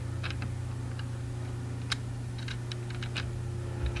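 Light, irregular clicks and taps of fingers handling a plastic Lego car and toy trailer hitch while fitting a bent-metal coupling pin, over a steady low hum.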